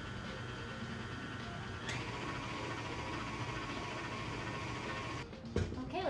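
KitchenAid Ultra Power stand mixer running steadily as it beats cake batter, switched off a little before the end, followed by a single knock.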